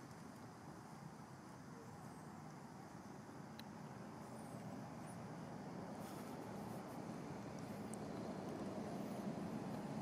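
Steady low outdoor background rumble that slowly grows louder, with a couple of faint clicks.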